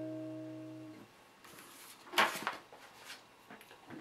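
A strummed acoustic guitar chord, the B that resolves the Bsus4, ringing and fading out over about the first second. Then a short burst of rustling noise comes about two seconds in.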